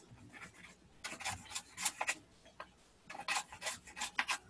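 Paintbrush brushing across paper, spreading a watery paint wash in short strokes that come in two spells, about a second in and again past three seconds.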